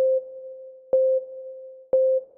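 Countdown timer beeps: three short electronic beeps at the same low pitch, one a second, each starting sharply and fading until the next, ticking off the last seconds of the answer time.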